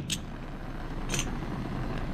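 Oxy-acetylene torch lighting: a sharp snap from the flint striker right at the start, then the freshly lit flame burning with a steady hiss. A fainter click about a second in.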